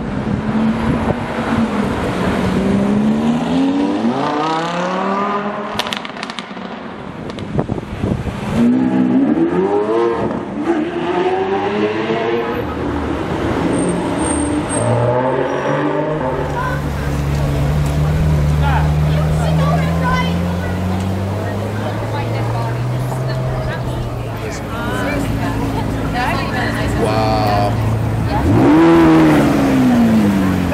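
Exotic sports-car engines revving and driving past. There are several sweeps up and then down in pitch, a steadier low engine note through the middle stretch, and another rev as a car goes by near the end.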